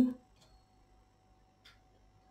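Two faint, short clicks of a metal transfer tool against the steel needles of a domestic knitting machine as stitches are lifted by hand, one about half a second in and one near the end, over a faint steady hum.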